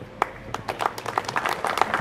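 Audience applauding: scattered claps begin just after the start and quickly thicken into steady applause.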